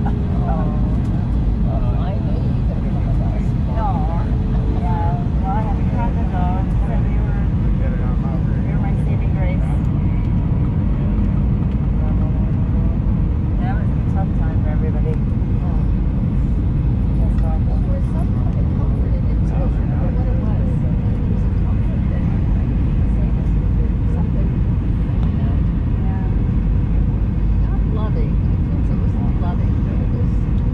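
Steady, loud cabin noise inside an Airbus A319 airliner on approach: a constant low engine and airflow rumble. Indistinct voices of people talking sound faintly over it now and then.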